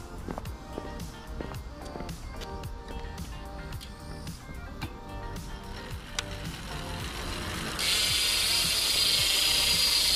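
Rear freehub of a stock Merida Expert SL aluminium wheel freewheeling as the spun wheel coasts: a steady high buzz of fast ratchet ticking that starts suddenly about eight seconds in, over background music. Its sound is neither especially quiet nor noisy, just okay.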